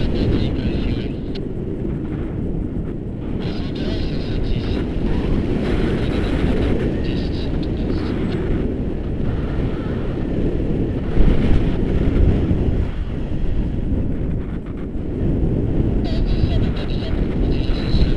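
Airflow buffeting the microphone of a camera carried in flight under a tandem paraglider: a loud, steady rumble of wind noise, with a sharper gust about 11 seconds in.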